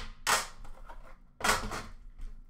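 A metal Upper Deck The Cup card tin being opened and set down on a glass counter, with sharp metallic clanks and clatter, the loudest about a second apart.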